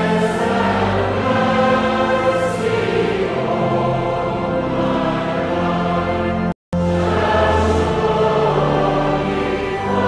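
A group of voices singing a hymn in long held notes. The sound drops out completely for a moment about two-thirds of the way through.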